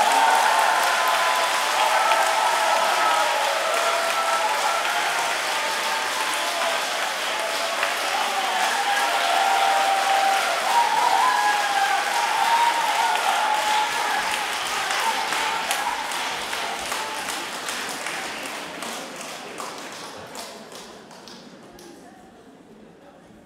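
Concert-hall audience applauding after the duet, a dense spread of hand claps with voices calling out in the crowd; the applause fades away over the last several seconds.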